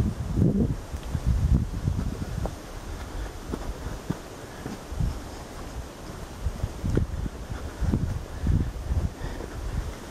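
Wind buffeting the microphone in gusts, with footsteps on a dirt woodland trail ticking about once a second.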